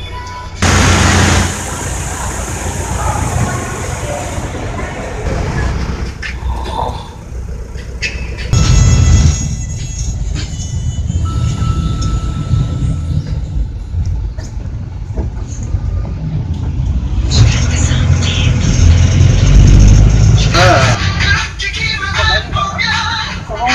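Cabin noise inside a moving city shuttle bus: steady engine and road rumble, with louder rushes of noise about a second in and around nine seconds. Music and voices play over it, clearest near the end.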